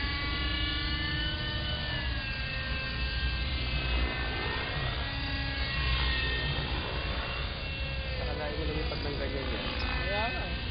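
Hirobo Sceadu radio-controlled helicopter flying overhead during 3D aerobatics, its engine and rotor whine rising and falling in pitch as it manoeuvres.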